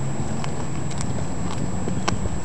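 Cat chewing on a freshly killed small bird, with a few sharp crunching clicks about half a second apart. Underneath is a steady low hum.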